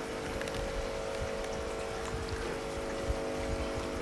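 Steady background hum holding a few steady tones, with a faint running-water sound over it.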